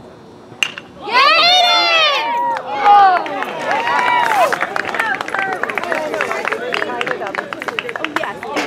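A metal baseball bat hits a pitched ball with a sharp ping about half a second in. Loud shouting and cheering from spectators and players follows, then rapid clapping.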